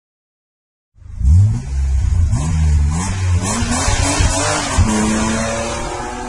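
Car engine sound effect revving hard up and down with a tyre screech, starting suddenly about a second in and settling to a steadier note near the end.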